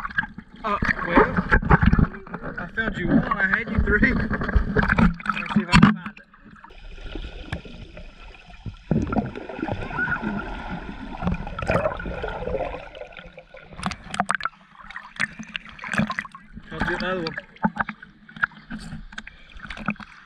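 Sea water sloshing and splashing around an action camera held at the surface. About six seconds in the camera goes under and the sound turns muffled and quieter, and in the last few seconds it is back at the surface with splashes.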